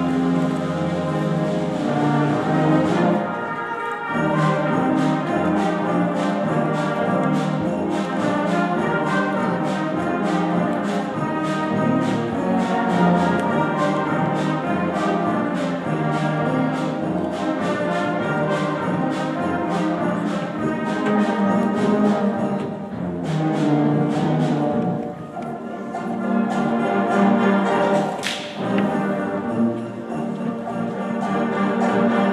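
Junior high concert band playing, brass and woodwinds over a steady percussion beat, with one sharp accent near the end.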